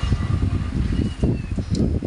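Low, uneven rumbling noise on the microphone, starting abruptly.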